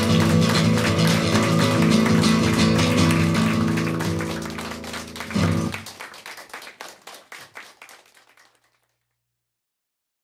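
Acoustic guitar playing the closing bars of a song, ending on a last strummed chord about five and a half seconds in that rings and dies away. Scattered light taps follow, fading out before the end.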